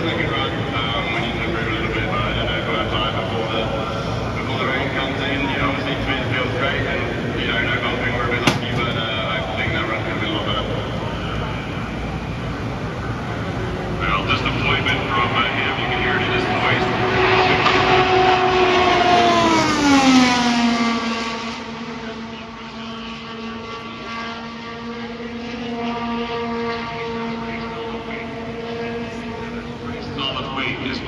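Honda-powered IndyCar approaching down the front straight at qualifying speed, its engine note growing louder over several seconds. About twenty seconds in it drops sharply in pitch as it passes, then carries on at a steady lower pitch as it goes away down the track.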